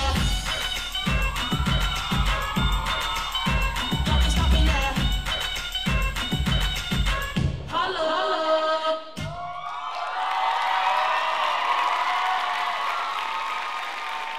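A hip-hop dance mix with a heavy, steady beat plays, then a short vocal phrase, and the music cuts off about nine seconds in. The audience then cheers and whoops until the end.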